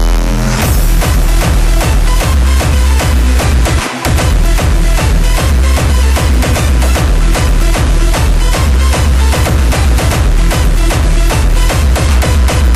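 Hardstyle dance music: a heavy kick drum pounding at a fast, even beat under synths. The bass drops out for a moment about four seconds in, then the beat comes straight back.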